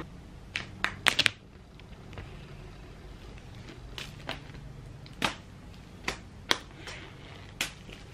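Clear plastic shrink wrap being peeled off a MacBook Air box: scattered sharp crackles and snaps, about a dozen, the densest cluster a little over a second in.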